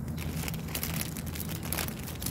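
Thin plastic bag crinkling and rustling in irregular crackles as it is wrapped around a citrus branch by hand, over a steady low hum.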